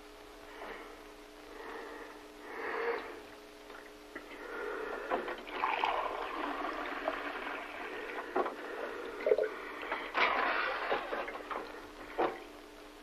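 Water running from a bathroom tap into a sink and being splashed, coming in uneven surges that are heaviest about halfway through and again near the end.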